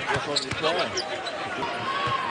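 Basketball being dribbled on a hardwood arena court, with voices over it.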